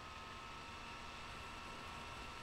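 Quiet, steady hiss with a faint, steady high whine: background room tone, with no other sound standing out.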